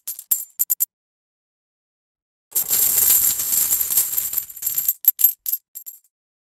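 Coins clinking: a few sharp metallic clinks, a pause of nearly two seconds, then about two and a half seconds of coins pouring and jingling together, and a few last clinks near the end.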